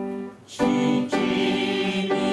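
A held piano chord fades out, then about half a second in a congregation starts singing a hymn with piano accompaniment.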